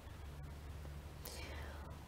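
Quiet pause between speakers: a faint steady low hum, with one soft breath-like hiss a little past the middle.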